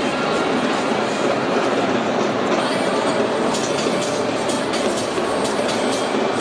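Steady, dense stadium crowd noise during the pre-match warm-up, with a few sharp clicks in the second half.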